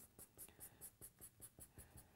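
Faint, quick back-and-forth scratching of a felt-tip marker shading on brown paper, about five strokes a second.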